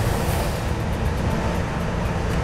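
Locomotive-hauled passenger train running past with a steady rumble, mixed with background music.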